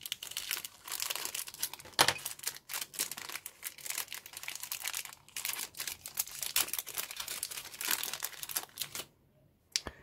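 A thin clear plastic parts bag crinkling and rustling as fingers work it open and pull out a rubber model wheel, with one sharp crackle about two seconds in. The crinkling stops about nine seconds in.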